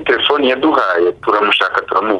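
Speech only: one person talking continuously, with brief pauses between phrases.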